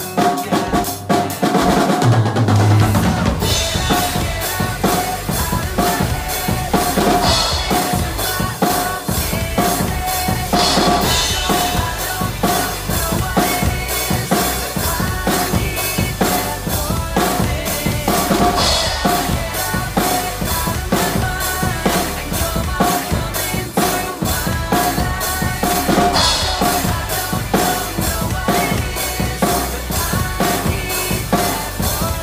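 Acoustic drum kit played with sticks to a recorded pop song: a steady beat of kick drum and snare with cymbal crashes over the song's backing track.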